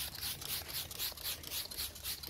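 Hand trigger spray bottle misting a water-based sealant coating onto a wet car panel: a rapid run of short hisses, about five a second.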